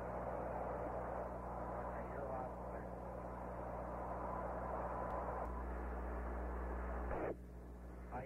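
Static hiss on the Apollo 8 air-to-ground radio link, with a steady hum under it and faint, unintelligible voice traces in the noise. The hiss cuts off abruptly near the end, like a squelch closing.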